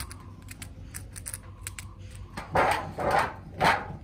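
Pen scratching on a textured wall as a name is written: small ticks and clicks at first, then three louder scratching strokes in the second half.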